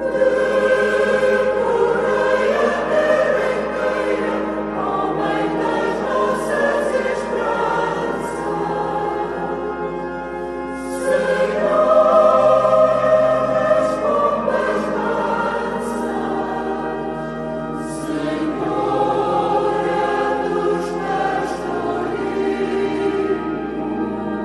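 A choir singing sacred music in long, sustained phrases, swelling louder about eleven seconds in.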